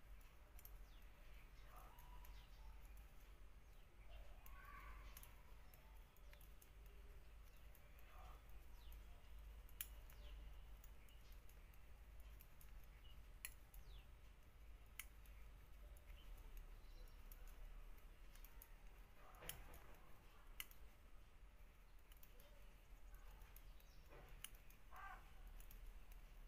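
Near silence, with faint scattered clicks of metal knitting needles touching as a row of stitches is purled.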